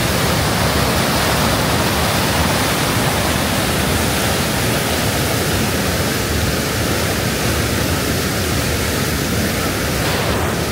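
River whitewater rapids and a small waterfall rushing loudly and steadily.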